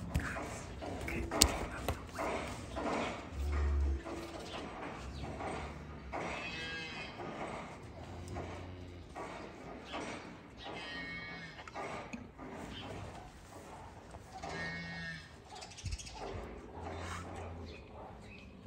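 Beef cattle mooing in a pen, with several calls a few seconds apart. A sharp click comes about a second and a half in.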